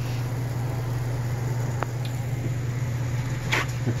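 A steady low hum with a faint hiss behind it, a light click about two seconds in, and a brief rustle near the end.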